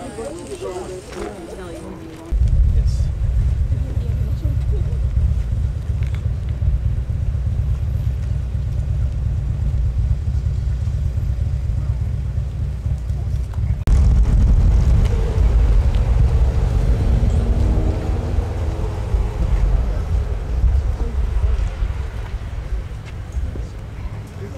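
Wind buffeting the microphone outdoors: a loud low rumble that starts suddenly a couple of seconds in and grows louder about halfway through, with a laugh and faint voices from the crowd behind it.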